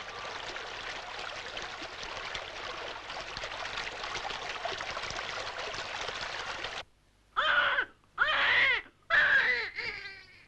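A stream running steadily, cutting off suddenly about seven seconds in. Then a baby cries three times, each cry rising and falling in pitch.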